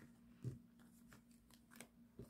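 Faint handling of tarot cards on a cloth-covered table: a few soft taps and slides, the clearest about half a second in and another just before the end.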